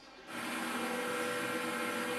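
Robotic welding cell running: a steady machine hum made of several held tones over a light hiss, starting about a third of a second in.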